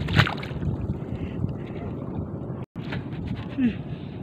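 Shallow seawater sloshing and splashing around someone wading and groping by hand for shellfish, with a sharp splash just after the start. The sound cuts out for an instant near the end.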